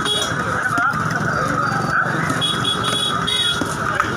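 Busy fish market din at a steady level: many voices talking and the engines of passing vehicles.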